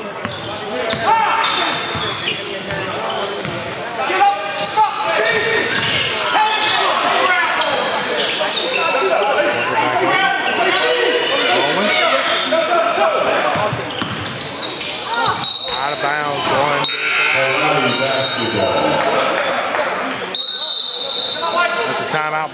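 Voices of the crowd and players echoing in a high school gym during live basketball play, with the ball being dribbled on the hardwood floor.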